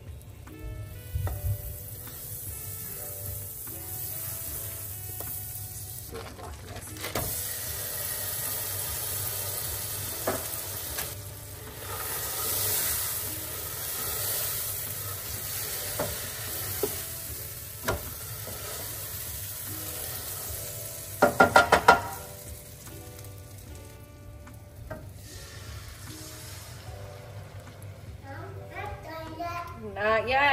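Butter and then a block of cream cheese sizzling in a hot nonstick pan, with a wooden spoon stirring and scraping through it. A brief loud burst of rapid pulses comes a little past two-thirds of the way through.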